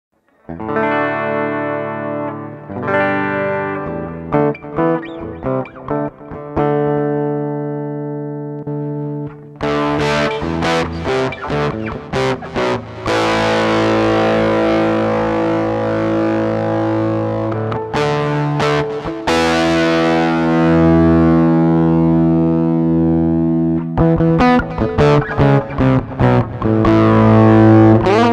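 Pedulla XJ-S electric guitar played through a Roland SIP-300 set to overdrive, giving a distorted tone. It opens with quieter phrases and moves about ten seconds in to louder lead playing, with quick runs and long sustained notes.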